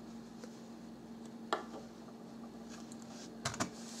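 Faint steady low hum with a few soft clicks: one sharp click about a second and a half in and a short cluster of clicks near the end.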